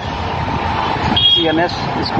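Steady road-traffic and wind noise of moving through city traffic, with a brief voice fragment about halfway through.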